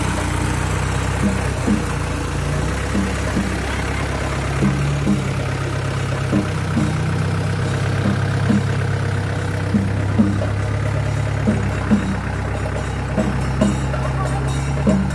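Portable petrol generator running steadily with a low hum. Short taps sound over it about twice a second.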